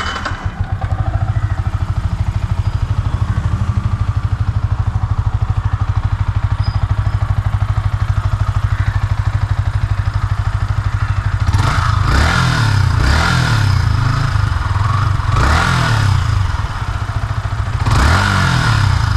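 Yamaha R15 V3 BS6's 155 cc single-cylinder engine idling steadily, heard close to the exhaust. Near the end it is revved in several quick throttle blips that rise and fall.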